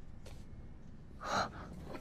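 A man's single short, breathy gasp about one and a half seconds in, over quiet room tone.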